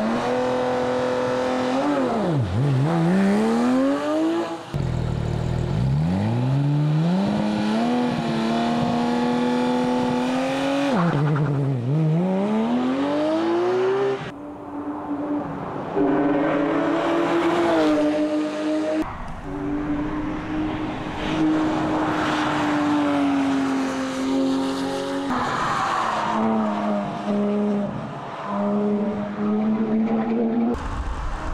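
Porsche 911 GT3 RS's naturally aspirated flat-six engine revving hard, its pitch climbing and falling again and again as the car accelerates, shifts and slows. The sound breaks off suddenly a few times where one take is cut to the next.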